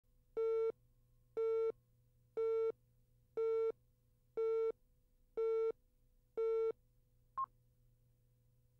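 Countdown leader beeps: a buzzy tone beeping once a second, seven times, each about a third of a second long, then a single very short, higher-pitched blip near the end.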